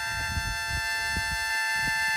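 Harmonica holding a single chord steadily.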